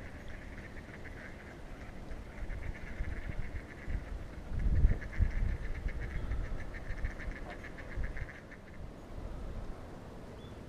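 Water birds calling in fast runs of repeated calls, with a short pause early on, stopping shortly before the end. A low rumble on the microphone swells around the middle and is the loudest moment.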